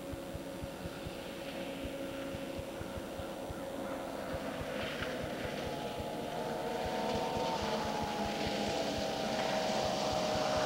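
Snowmobile engine approaching with a steady whine that grows gradually louder, its pitch easing down slightly near the end.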